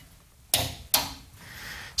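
Two sharp clicks, about half a second apart, from the spring-loaded safety interlock switch at an antique equipment cabinet's back opening as it is pressed and released by hand. The switch most likely cuts power to the power transformer when the back is opened.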